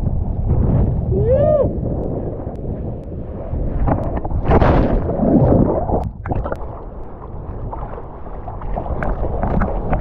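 Ocean water rushing and splashing around a surfer riding and falling off a wave, heard close up through a mouth-held action camera, with wind buffeting the microphone. A short pitched cry rises and falls about a second and a half in.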